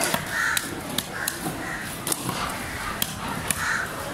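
Crows cawing in a run of short, harsh calls about half a second apart, with sharp little clicks between them.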